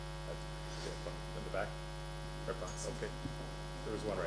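Steady electrical mains hum in the microphone and sound-system audio, with a few faint, brief snatches of distant voices.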